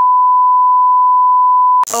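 1 kHz test tone of a TV colour-bars card: one steady, unbroken beep lasting almost two seconds that cuts off suddenly.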